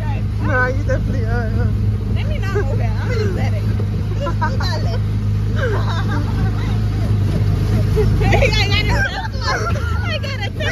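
Small gasoline engine of an Autopia ride car running with a steady low drone as the car moves along the track, with unclear voices and chatter around it.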